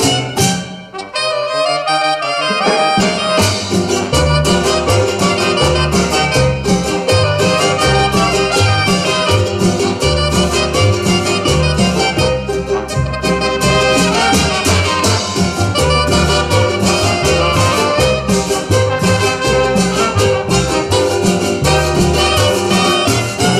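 A live cumbia band plays with a horn section of trumpet, trombone and saxophone over upright bass, guitars and drum kit, keeping a steady dance beat. About a second in there is a short break where the bass and drums drop out, and the full band is back in by about the third second.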